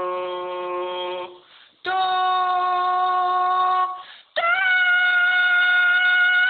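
A woman singing three long held notes on "do", each pitched higher than the last, stepping up by octaves as a vocal warm-up exercise. The sound is a compressed phone voice message played back, thin and cut off in the highs.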